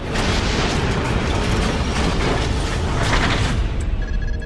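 Logo-reveal sound effect: a loud, even rush of noise with a heavy low rumble, like a mechanical assembly or explosion, with a couple of sharper hits near the end.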